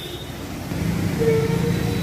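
Low road-traffic rumble of a vehicle passing on the wet road. It grows louder from about halfway through, with a faint steady hum riding on it.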